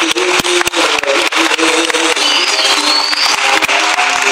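Bağlama (long-necked Turkish saz) playing a melody of short plucked notes in a live concert, with a steady haze of hall and audience noise and a few sharp knocks early on.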